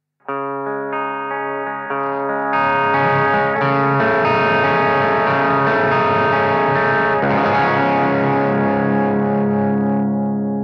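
Electric guitar chords played through a blackface Fender Bassman 50-watt tube head, plugged into its Bass channel, with a light edge of distortion. One chord is struck just after the start and a fuller one at about two and a half seconds. The chord changes near seven seconds and is left ringing.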